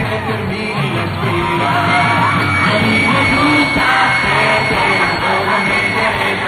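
Live pop-rock band playing loudly, with a male lead singer singing into a microphone and holding a long note in the middle. The sound is dull with no high treble.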